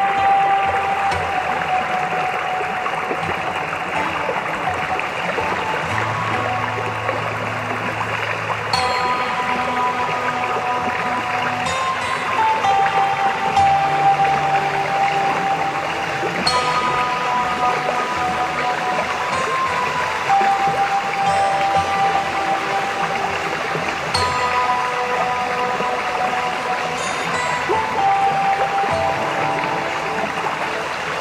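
Slow instrumental background music of long, held melody notes and sustained bass notes, over a steady rushing sound of flowing water.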